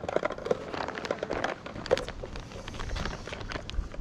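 A plastic soft-plastic lure packet crinkling as it is handled, in a run of small irregular crackles and clicks, with wind rumbling on the microphone in the second half.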